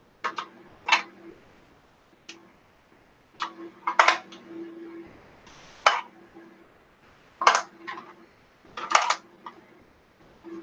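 Plastic markers being handled in a cup and their caps pulled off and snapped back on: an irregular run of sharp plastic clicks and clacks, about a dozen, the loudest about a second in, around four seconds, six seconds, and twice near the end.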